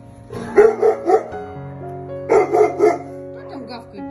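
A dog barking in two bouts of three loud barks, about a second and a half apart, over background music.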